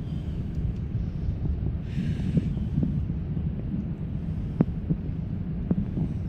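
Low rumble of wind buffeting the microphone, with light sloshing of water around a striped bass held by the jaw at the surface, a brief splash about two seconds in and a few small drips later.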